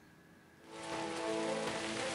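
Near silence, then about two-thirds of a second in a background music bed fades in: held steady tones under a steady rain-like hiss.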